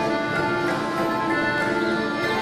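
Instrumental music for a stage dance, with held melody notes over a steady accompaniment.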